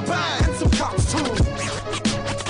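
Hip hop beat with turntable scratching: swooping scratch sounds over a heavy kick drum.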